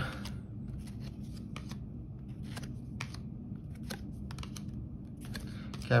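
A stack of thin cardboard trading cards being handled and flipped one at a time. Card slides over card with faint, irregular flicks and clicks, spaced a second or so apart.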